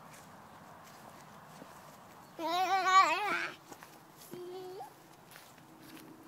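Toddler's vocal sound: one loud, wavering, drawn-out cry about two and a half seconds in, then a shorter, softer one that rises in pitch at its end.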